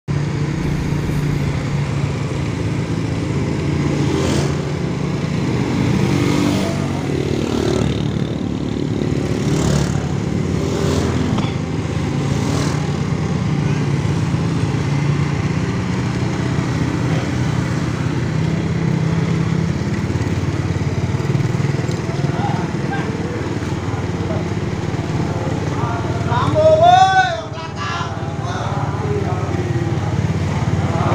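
Motorcycle and vehicle engines running steadily in slow road traffic. Near the end one loud drawn-out voice call rises and falls.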